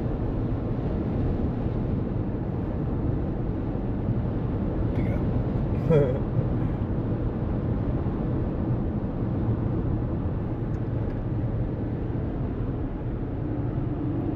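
Steady road noise inside a moving car's cabin: tyres and engine at highway speed, an even rumble.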